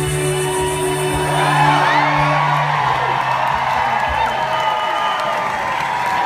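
A symphony orchestra holds a chord that dies away about three seconds in, while a crowd breaks into cheering and whoops.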